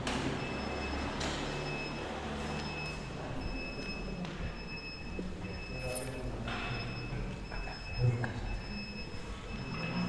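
Quiet room noise of people getting up and moving about, with a few soft knocks and shuffles, over a faint steady high-pitched whine.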